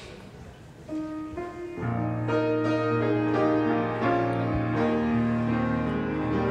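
Instrumental hymn introduction starting about a second in: a couple of single notes, then full held chords over a steady bass from about two seconds in, leading into the singing.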